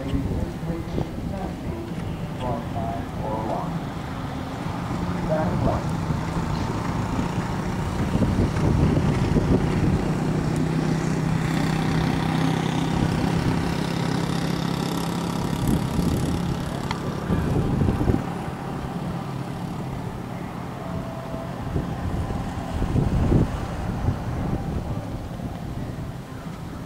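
A steady engine hum from about five seconds in until about seventeen seconds, over outdoor rumble, with faint voices early on.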